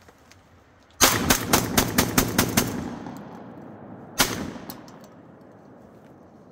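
Beretta A300 Ultima Patrol 12-gauge semi-automatic shotgun fired rapidly: about eight shots in quick succession over about a second and a half, echoing off the surroundings, then one more shot about a second and a half later.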